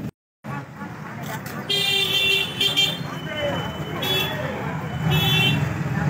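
A horn sounding four short blasts over crowd voices: two close together about two seconds in, then two more about a second apart. The audio drops out briefly near the start.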